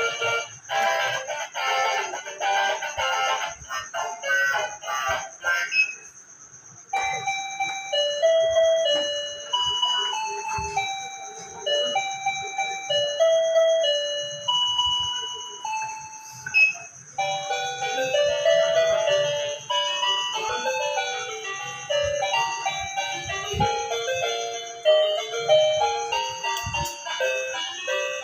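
Small electronic toy keyboard playing a simple melody of bright single notes as its keys are pressed, with a brief pause about six seconds in.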